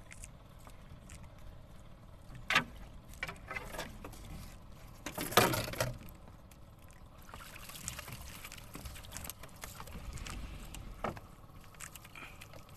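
Water splashing and dripping around a small outrigger fishing boat, with a few short splashes over a low steady wash; the loudest comes about halfway through.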